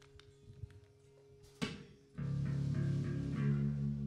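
Faint amplifier hum and small clicks, then a single knock about a second and a half in, and just after two seconds in the amplified electric and bass guitars come in with a sustained, ringing chord held steady.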